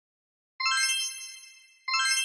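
Bright chime sound effect of a logo intro: one ringing ding about half a second in that fades away over about a second, then a second identical ding just before the end.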